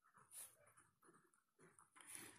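Near silence: faint room tone with only very faint traces of sound.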